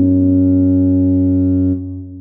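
Computer-rendered MuseScore tuba playback holding a two-note chord, a low bass note under a higher sustained note, as the written multiphonic. Both notes hold steady, then stop about three-quarters of the way through and die away in a short fading tail.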